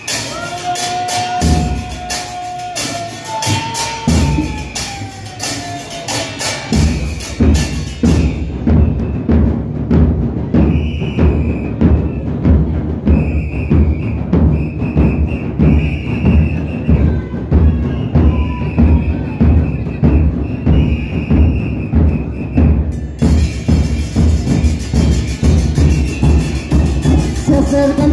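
Murga porteña percussion: bass drums with cymbals mounted on them (bombos con platillo) playing the murga's driving rhythm. Cymbal crashes and a few long held tones come first, and about seven seconds in the drums settle into a steady, even beat.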